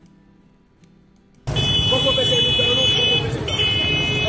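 Quiet for about a second and a half, then loud street sound starts suddenly: a crowd's voices and traffic noise, with a steady high-pitched tone that breaks off briefly near the end.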